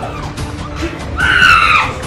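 A woman screaming in distress: one long high-pitched scream about a second in, falling in pitch at its end, over background music.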